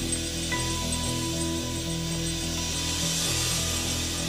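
Rock band playing live with electric guitars, keys and drums: long chords held and ringing on, with a hiss of cymbals building in the upper range during the second half.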